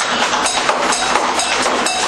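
Subway train clattering on the rails through the station: a loud, dense rumble with rapid clicks.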